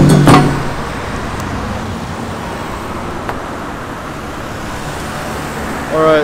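Steady road traffic noise from passing cars, following a couple of final percussion hits of music right at the start.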